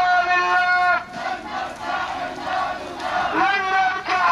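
Crowd of marchers chanting a slogan together in long, drawn-out shouts. The loud held cry breaks off about a second in, the voices fall to a lower mingled chant, and a new loud shout rises near the end.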